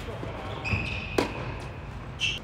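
Tennis racket striking the ball in a forehand, one sharp pop about a second in, with a steady high squeak just before and through the hit.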